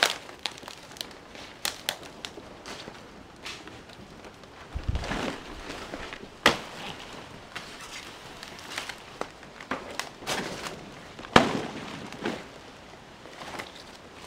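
Large fresh banana leaves rustling and crackling as they are pulled and handled, with irregular sharp snaps, the loudest about six and a half and eleven seconds in, and dry leaf litter crunching underfoot.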